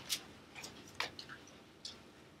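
Thin Bible pages being turned by hand, giving three faint, short ticks and rustles.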